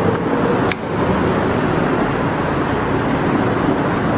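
Steady rushing background noise with a faint underlying hum, and a single short click a little under a second in.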